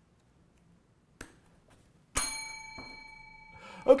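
A single bright, bell-like ping, struck sharply about two seconds in and ringing as it fades over about a second and a half. A faint click comes just before it.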